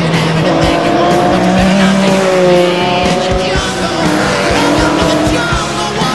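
Racing car engines passing at speed, their pitch sliding down as they go by, over background music with a steady beat.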